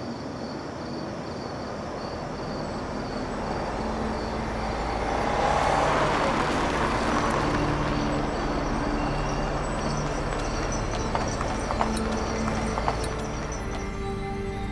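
Street ambience: a rushing noise swells to a peak about six seconds in and then eases, with a few sharp clicks near the end, over faint low music.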